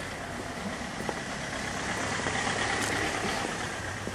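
A motor vehicle's engine running nearby, swelling a little louder in the middle and easing off near the end, over street background noise.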